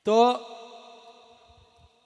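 A man's voice through a microphone and PA draws out a single syllable, gliding up and then holding one steady note that fades away over about a second and a half.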